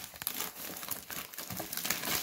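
Clear plastic zip bag crinkling and rustling in the hands as a card box is pulled out of it, a dense run of irregular small crackles.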